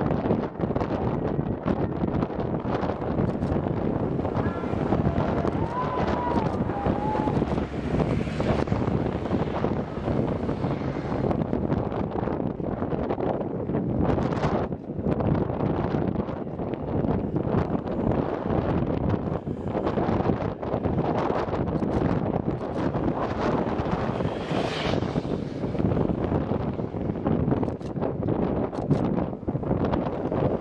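Wind buffeting the microphone: a continuous gusty rumble that rises and falls.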